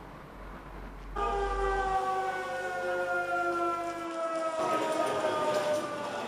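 The S.M.I. factory's air-raid siren sounding, a chord of several tones that starts abruptly about a second in and slides slowly down in pitch.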